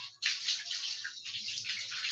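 Water splashing and running off a bather onto a concrete floor, a steady hiss with a brief break just after the start.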